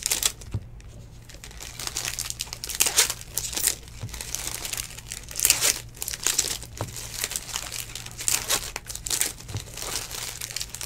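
Foil trading card pack wrappers crinkling in the hands as the packs are torn open, in irregular crackly bursts.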